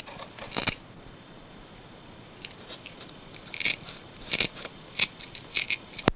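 Small sharp clicks from the buttons of a small stick-on car clock being pressed, two near the start and several more in the last half, irregularly spaced, over cassette tape hiss.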